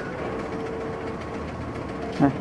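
Steady mechanical hum with an engine-like drone, and a faint steady tone that fades a little over a second in.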